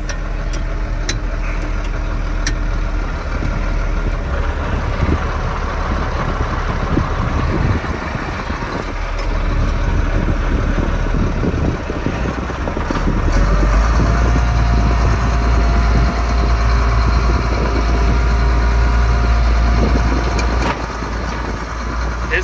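Case IH 7220 Magnum tractor's six-cylinder diesel engine running, heard from inside the cab, with two clicks within the first three seconds. About thirteen seconds in the engine grows louder and deeper for some seven seconds, then drops back.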